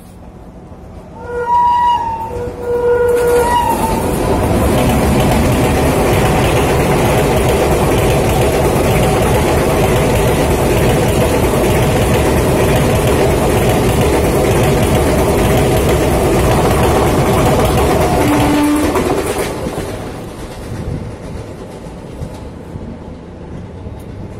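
An express passenger train's locomotive horn gives two short blasts, then the train runs through the station at speed. The wheels and coaches make a loud steady rumble for about fifteen seconds, which fades once the last coaches have gone by.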